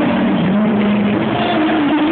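Live band music in an arena, with a male singer holding a long sung note that glides slowly over loud, muddy accompaniment, as a phone in the audience records it.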